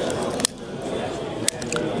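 Two sharp clicks about a second apart: a long-nosed utility lighter being triggered to light a fuel-soaked cotton swab, over steady background voices.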